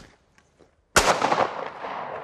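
A single shotgun shot at a thrown clay target about a second in, its report rolling away in a long echo.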